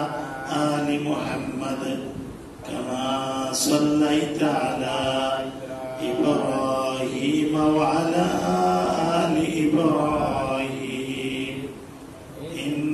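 A man's voice chanting melodically into a microphone, in long drawn-out phrases with short breaks every three to four seconds.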